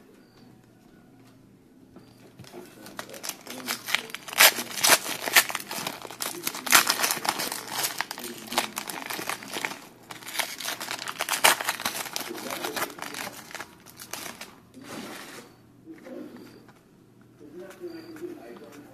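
Crinkling and crackling of plastic card packaging being handled, starting about two seconds in, dense and irregular with a brief lull about halfway, dying down a few seconds before the end.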